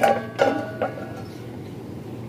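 Metal cookware being handled on a wire display rack: three brief clinks and knocks in the first second, one with a short ring.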